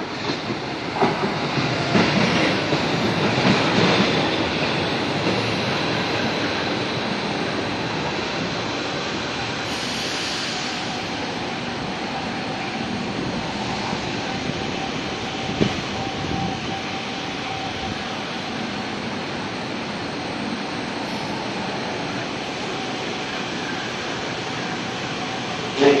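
São Paulo Metro K-fleet train passing close by: its wheels click over rail joints as it draws near, loudest a few seconds in, then settle into a steady running rumble with a faint steady whine and an occasional click.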